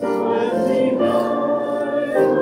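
Congregation singing a hymn together with piano accompaniment, a new line of the hymn starting at once after a brief pause.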